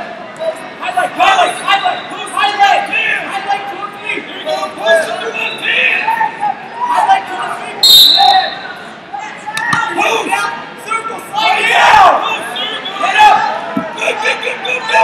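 Voices of spectators and coaches calling out, echoing in a large hall, over dull thuds of wrestlers' bodies hitting the mat. There is a short, sharp high sound about eight seconds in.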